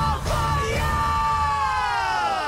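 Live symphonic metal concert audio: the band's heavy playing drops away about a second in, leaving a singer's long yelled note that slides slowly down in pitch.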